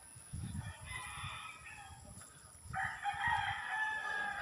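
Roosters crowing: a faint crow about a second in, then a louder, longer crow near the end.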